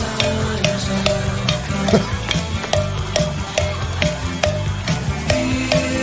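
A rock band playing a mid-tempo song: a repeating electric guitar figure over bass and drums, with a steady beat of sharp, ringing cowbell strikes several times a second.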